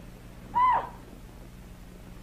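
A man's voice imitating an animal call: one short, high call about half a second in that rises and falls in pitch.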